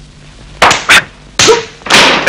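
Loud sudden blows and crashes of a scuffle breaking out, in three bursts starting about half a second in.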